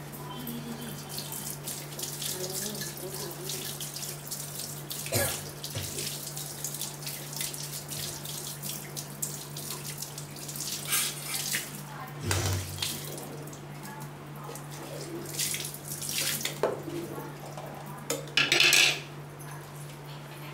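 Chicken biryani gravy boiling in an aluminium pot on a stove: a steady bubbling hiss with irregular louder sputters, the loudest near the end, over a steady low hum.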